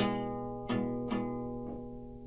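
Guitar chords strummed to end a song: one full strum at the start, then three lighter strums, left ringing and fading away.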